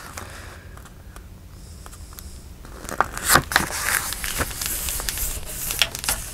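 Sheets of paper rustling and sliding as hand-folded journal pages are creased and moved about. It is low at first, then comes in several short, sharp rustles from about halfway in.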